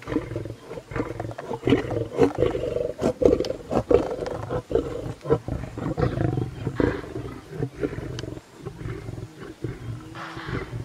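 Lions growling at a kudu kill: a low, rough, pulsing growl with short sharp sounds scattered through it.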